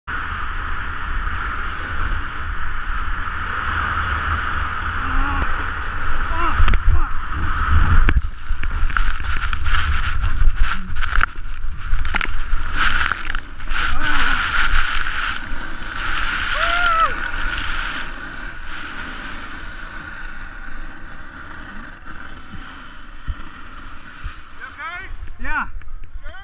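Wind buffeting an action-camera microphone and skis scraping over icy snow during a fast run, then from about eight seconds a long stretch of knocks and thuds as the skier falls and tumbles, the camera ploughing into the snow; a voice cries out briefly during the fall.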